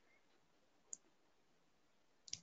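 Near silence, with a single faint click about a second in.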